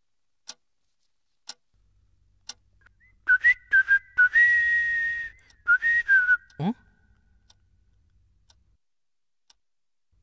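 A wall clock ticking once a second, then, about three seconds in, a person whistling a short tune of a few notes for about three seconds while the ticking carries on.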